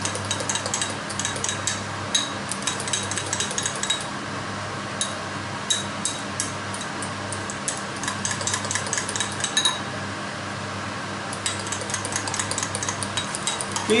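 A fork beating the carbonara's egg mixture in a glass, a rapid run of light clinks against the glass that thins out partway and pauses briefly before picking up again near the end. A steady low hum from the kitchen extractor hood runs underneath.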